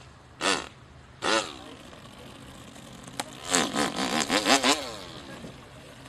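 A man imitating a chainsaw with his mouth: two short sputters like a saw that will not catch on the pull cord, then, about three and a half seconds in, a longer revving buzz whose pitch rises and falls for over a second.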